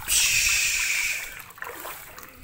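Water splashing in a shallow paddling pool as a plastic ball is tossed in: a sudden splash that lasts about a second and dies away.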